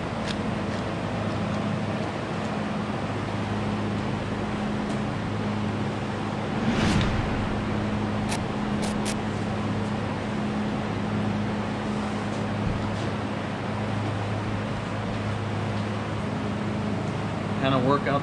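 Steady electric hum and air rush of a shop ventilation fan. There is a single knock about seven seconds in and a few light clicks just after.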